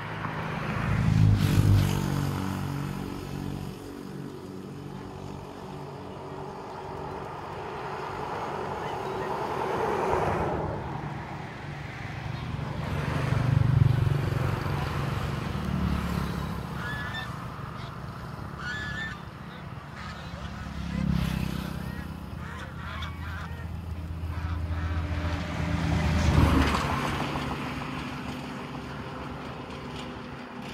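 A flock of domestic geese honking and calling on the water. Several low rumbles swell up and fade over the top, the loudest about two seconds in, near the middle and near the end.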